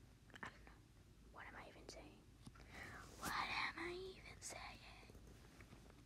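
Soft whispering, too faint for the words to be made out.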